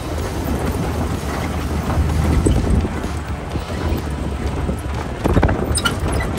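Flat-fender Willys Jeep driving on a rough dirt trail: a low engine and drivetrain rumble with constant irregular knocking and rattling as the body and loose parts bounce over the ruts, and wind buffeting the microphone.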